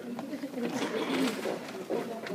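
Several people talking at once, a murmur of overlapping voices as a choir breaks up after singing.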